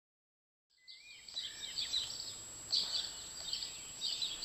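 Small garden birds chirping and singing, starting just under a second in after silence, over a steady high-pitched tone.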